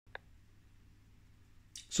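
Quiet room tone with a faint steady low hum, broken by one brief faint click just after the start.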